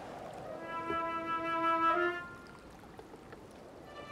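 A single held note from a wind instrument, about a second and a half long, with a slight step up in pitch near its end before it fades.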